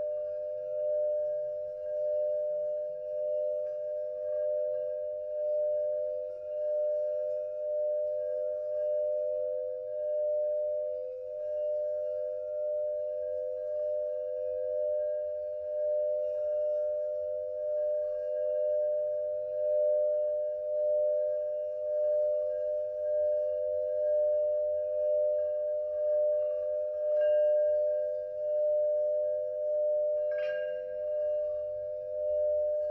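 Antique Mani singing bowl sung by circling a wooden stick around its rim: a sustained ringing tone that swells and eases in a slow pulse.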